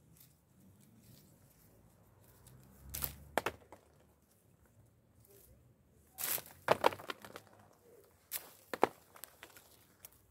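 A plastic hand olive rake is combed through olive branches to strip the fruit. The leaves and twigs rustle and snap in three short bursts, the busiest just past the middle.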